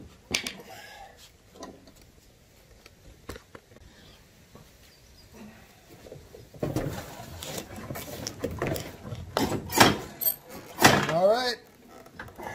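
Fitting a rubber pad onto the brake pedal of a John Deere riding mower: a few light clicks, then a few seconds of rubbing and handling noise with several sharp knocks as the pad is forced home. A short vocal sound comes near the end.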